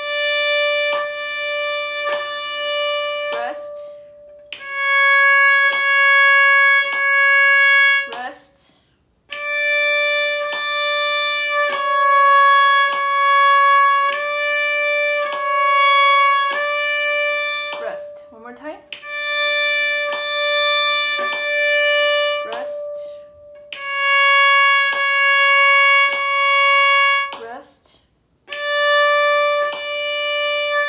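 Viola played with the bow (arco): a slow exercise of held single notes high on the A string, in phrases of three or four notes about four seconds long, each followed by a short rest.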